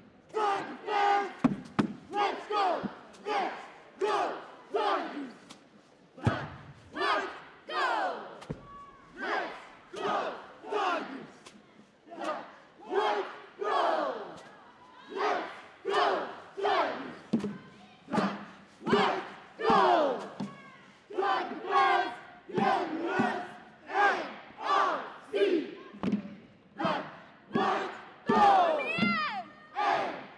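A cheerleading squad shouting a cheer in unison, short rhythmic yells about once a second, with a couple of dull thuds in between.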